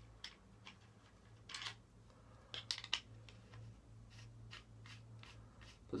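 Faint, irregular small clicks and scrapes from a dual-18650 MOSFET box mod being handled, over a steady low hum.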